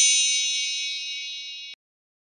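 A bright, bell-like chime sound effect for an intro, ringing and slowly fading, then cut off suddenly shortly before the end.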